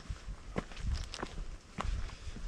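Footsteps of hikers walking on a sandy dirt trail, a handful of irregular steps close to the microphone.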